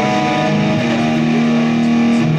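Electric guitar played through a homemade effects board, held notes ringing steadily with a change of note about a second in.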